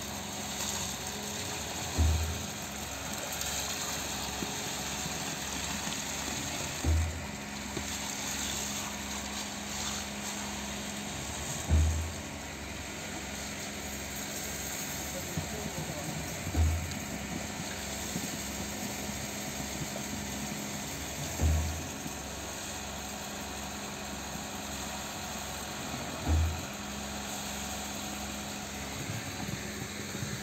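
Concrete pump running steadily, with a heavy low thump about every five seconds as concrete is pushed in pulses through the delivery hose into the foundation beam trench.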